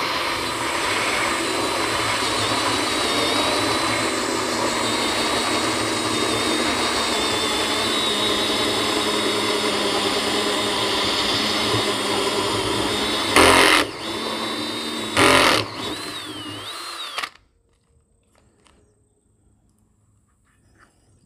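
Cordless drill spinning a hole saw through the top of a plastic 55-gallon drum, running steadily with a high whine. Two short louder spells come about 13 and 15 seconds in, and the drill stops about three seconds before the end.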